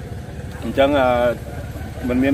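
A man's voice: one drawn-out vocal sound about a second in, over a steady low rumble.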